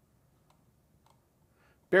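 Two faint, isolated clicks at a computer desk, about half a second and a second in, as someone works the computer in a quiet small room; a man starts speaking right at the end.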